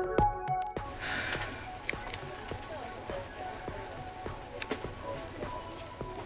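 Background music with a beat cuts off about a second in, giving way to the running noise of a train heard from inside a compartment: a steady rumble with light, irregular clicks and rattles.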